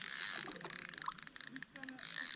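Spinning reel being cranked, a fast, uneven run of small mechanical clicks from its gearing as a hooked squid is reeled in.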